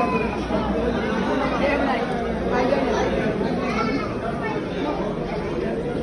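Crowd chatter: many voices talking at once in a steady babble, in a large, crowded dining hall.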